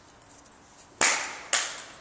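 A thrown Philips HPDS LED workshop lamp hitting asphalt: two sharp impacts about half a second apart, the first the louder, as it lands and strikes the ground a second time.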